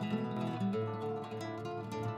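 Background music: a plucked string instrument playing soft, held notes that change every half second or so.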